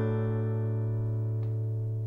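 The final strummed chord of a song on acoustic guitar and ukulele, ringing out and slowly fading.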